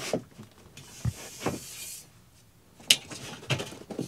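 Handling sounds of a campervan window frame being fitted into its opening by hand: a few knocks and clicks, the sharpest about three seconds in, with a brief scraping rub between them.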